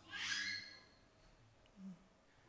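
A young child's voice: one short, high-pitched call at the start, falling in pitch, followed by a brief low sound near the end.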